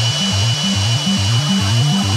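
Dubstep music: a low synth bass line repeating in short notes that step between two pitches, with no drum hits standing out.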